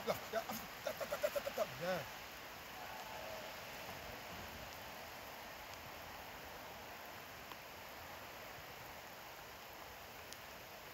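A man's voice calls a quick run of short repeated syllables in the first two seconds. After that there is only steady outdoor background noise.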